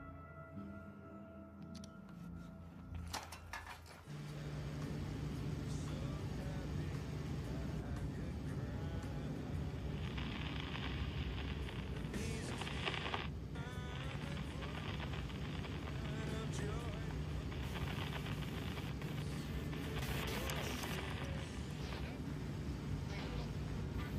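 Film soundtrack: soft sustained ambient music, then from about four seconds in a louder steady low drone of a car cabin with a car stereo playing over it.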